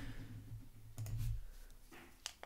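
Computer mouse clicking: two short clicks about a second apart, each with a dull low thump under it.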